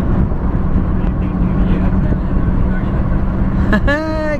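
Steady engine and road noise inside a moving car, with a constant low hum running under it.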